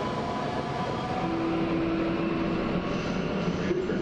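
Bombardier Talent 2 electric multiple unit running through an underground station: a steady rumble and hiss, with a faint steady whine that comes in about a second in and drops out about a second and a half later.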